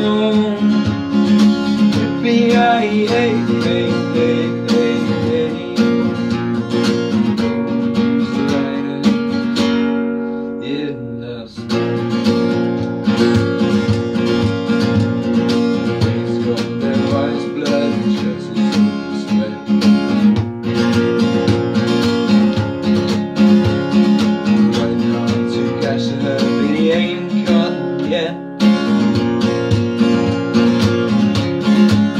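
Steel-string acoustic guitar with a capo, strummed in steady chords. About ten seconds in, one chord is left to ring and fade before the strumming picks up again.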